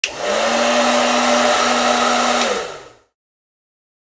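Hair dryer switched on with a click, its motor spinning up within a fraction of a second to a steady whine over a rush of blown air. About two and a half seconds in it clicks off and the motor winds down, dying away within about half a second.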